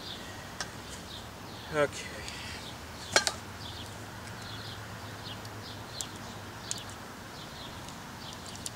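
Hand tools being handled: one sharp metallic click about three seconds in, then two lighter ticks later. Birds chirp faintly in the background.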